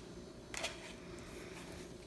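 Quiet room tone with one brief soft rustle about half a second in: a paper playing card being handled and laid on the table.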